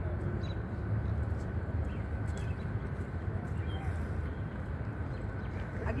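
Outdoor ambience: a steady low rumble and hiss, with faint voices now and then.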